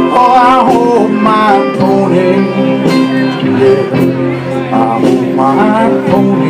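Live country-folk band playing an instrumental passage between sung lines: archtop acoustic guitar, upright bass and drums, with a lead melody line that bends in pitch in two phrases, one at the start and one about five seconds in.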